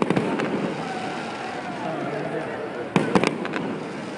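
Aerial fireworks bursting overhead: a couple of sharp bangs at the start and a quick cluster of three or four about three seconds in, over the chatter of a crowd.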